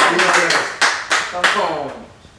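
Hand clapping with raised voices calling out, as listeners respond to a preacher. There are irregular sharp claps, several a second, and one voice gives a falling cry. It all dies away near the end.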